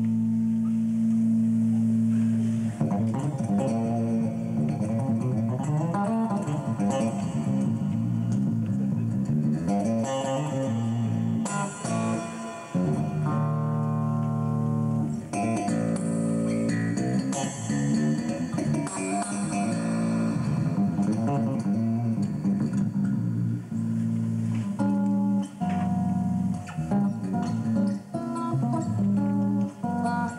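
Six-string electric bass played solo: a held low chord rings out, then gives way about three seconds in to fast runs and chordal passages, with bright high notes in the middle.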